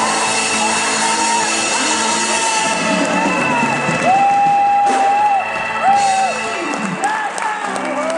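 A female singer performing live with a dance band. She holds one long high note about four seconds in, then a shorter one.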